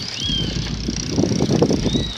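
Bicycles being ridden along a street: tyre and rattle noise from the bikes over the road surface, with wind on the phone's microphone, growing louder in the second half.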